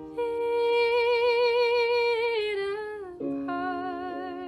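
A young woman singing one long held note that slides down in pitch near its end, over a piano backing track. A new piano chord sounds about three seconds in, and she begins the next sung phrase.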